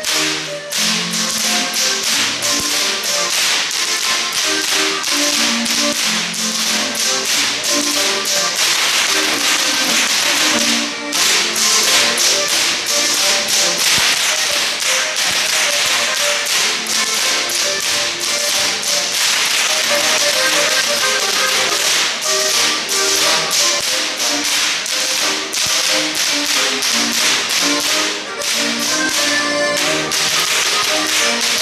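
A group of Bavarian Goaßl whip crackers cracking long whips together in a fast, steady rhythm, to live band music. The cracking breaks off briefly about eleven seconds in.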